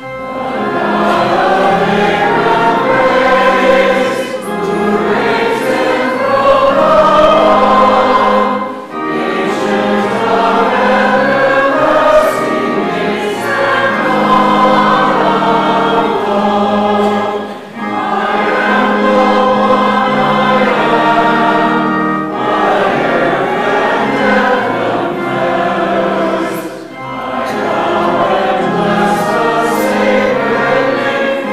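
Congregation singing a hymn with organ accompaniment, in sung phrases of about four to five seconds, each followed by a brief breath break.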